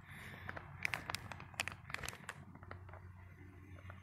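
Foil pouch of motor oil crinkling in faint, scattered clicks as it is squeezed to empty the oil into an engine's oil fill port.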